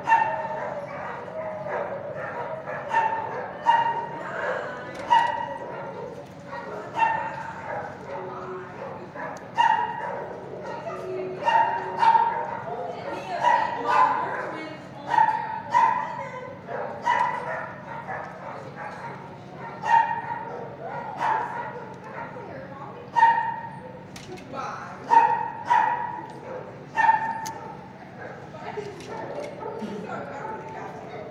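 Dogs in a shelter kennel barking and yipping over and over, short calls coming about once a second.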